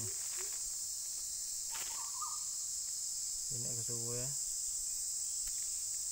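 Steady, high-pitched chorus of insects droning without a break, with a short vocal sound from a person about four seconds in.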